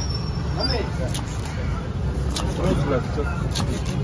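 A cleaver-style knife chopping fish on a cutting block, a sharp strike about once a second, over a steady low rumble and scattered voices.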